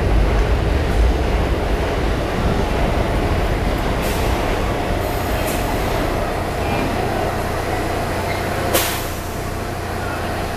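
R160 subway train stopped in an underground station: a steady low rumble and hum with a constant mid-pitched tone. A short, sharp sound comes near the end.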